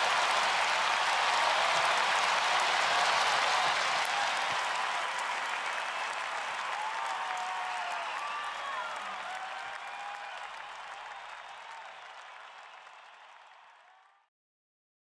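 Audience applauding with a few cheers once the song ends, fading out steadily to silence by the end.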